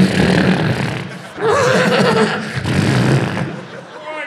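A man imitating a horse with his voice through a handheld microphone. There are two loud, rough bursts, the second carrying a wavering whinny.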